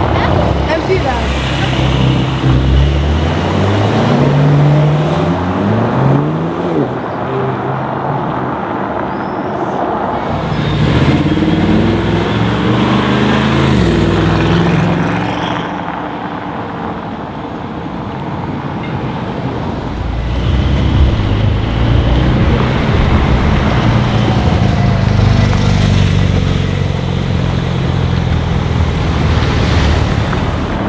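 A string of cars, Porsche 911s among them, driving past and accelerating away one after another, engines rising in pitch as they pull through the gears. It goes quieter for a few seconds just past the middle.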